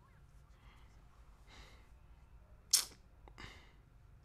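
A short, sharp breath noise close to the microphone, about three-quarters of the way in, followed by a fainter one; otherwise only low room noise.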